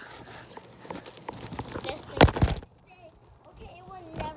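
Thumps of people jumping on a trampoline, with a quick cluster of loud thumps a little past halfway and lighter knocks around it. Faint voices sound in the background.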